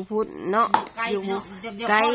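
A knife chopping into a bamboo strip, one sharp knock about three-quarters of a second in, under a woman talking.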